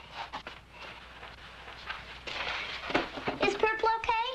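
A young girl's high voice asking a question near the end, after a few soft clicks and a short noise.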